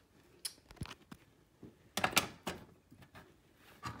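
Small hard-plastic clicks and knocks as a toy horse stable's hinged door and the stall inside are handled, with a cluster of louder knocks about two seconds in.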